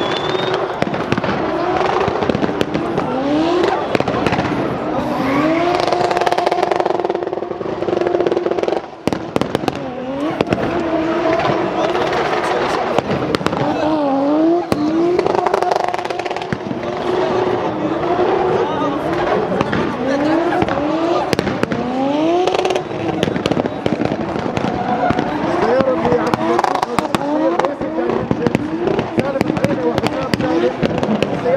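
Turbocharged Toyota 1JZ straight-six in a drifting BMW E36, revving hard over and over: the pitch sweeps up and down and is held flat at high revs for a second or two at a time. Many sharp cracks and pops run through it, and there is a brief drop about nine seconds in.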